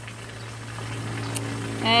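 Steady low hum with a faint hiss of running water from a garden hose left on, and a short click about two-thirds of the way in.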